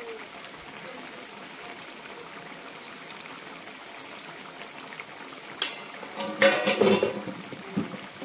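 Curry simmering in a wide pan on a gas stove, a steady hiss and bubbling. Near the end a sharp click is followed by a brief, louder burst of sound.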